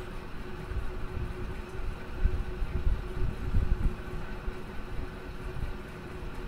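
Low, uneven rumbling background noise with a faint steady hum running through it.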